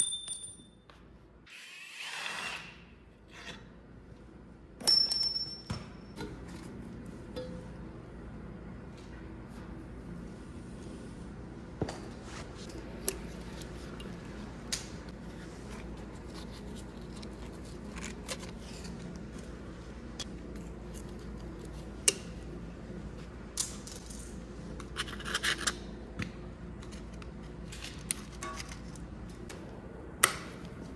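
Mechanic's tools at work on a diesel engine's bolts and parts. A cordless power tool runs briefly near the start, with a sharper metallic event a few seconds later, then scattered metal clicks and clinks of wrenches and parts over a steady low hum.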